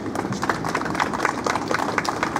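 Scattered applause from a crowd of people, many uneven hand claps.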